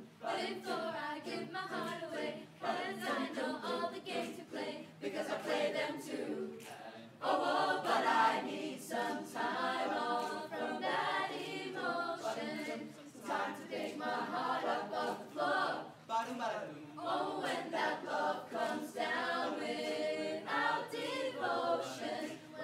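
A mixed youth choir singing a cappella in close harmony, with no instruments. The voices drop briefly about seven seconds in, then come back at their loudest.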